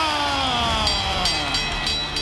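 Ring announcer drawing out a boxer's name in one long held call that slowly falls in pitch, over arena crowd noise.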